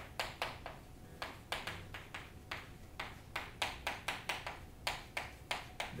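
Chalk writing on a chalkboard: a quick, irregular run of short taps and scratchy strokes as an equation is chalked up.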